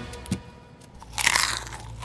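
A person eating at the table, chewing and crunching food in two short bursts, the louder one a little past halfway.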